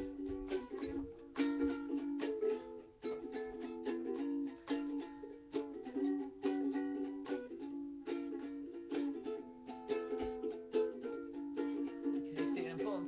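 Solo ukulele strummed in a steady rhythm, chords ringing with no singing over them: an instrumental passage of a folk song.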